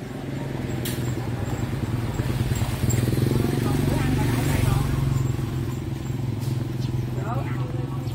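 A motorbike engine running steadily nearby, growing louder a few seconds in and then easing off, with faint voices of people in the street.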